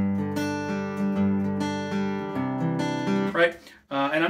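Steel-string acoustic guitar picked in an even arpeggio pattern: bass notes, then single notes coming up on the B string, about two to three notes a second, each left ringing into the next. The chord changes about two and a half seconds in.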